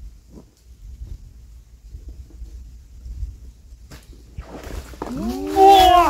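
A low rumble with a single click about four seconds in, then near the end a man's loud, drawn-out shout that rises and falls in pitch, as a traíra is hauled out of the water on a bamboo pole.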